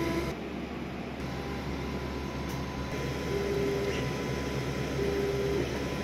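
Longer Ray5 10W laser engraver running: a steady fan hum with short, pitched motor whines as the head moves, three times (near the start, about halfway, and near the end).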